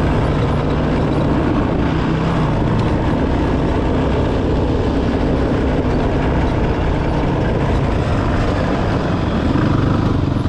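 Honda 450's single-cylinder four-stroke engine running steadily as the bike is ridden along a dirt trail, heard from the rider's helmet camera with wind and trail noise mixed in.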